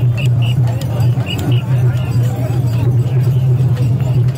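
A crowd of mikoshi bearers chanting and shouting in unison as they heave the portable shrine, with short metallic rings at irregular intervals from the shrine's hanging bell ornaments. A steady low hum runs underneath.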